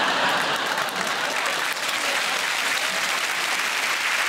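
Studio audience applauding: dense, even clapping from many hands.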